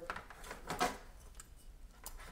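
Faint clicks and rustles of a USB cable and adapter being handled and plugged into a USB-C hub, with one slightly louder click a little under a second in.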